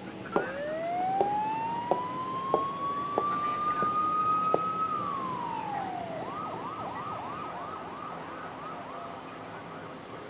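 Police siren: a long wail rising slowly for about five seconds, dropping, then switching to a fast yelp of about three rises a second. A few light knocks sound during the rising wail.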